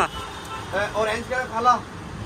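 Voices talking over a low background rumble.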